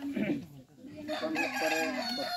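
A rooster crowing: one long call starting about a second in, after a brief voice at the start.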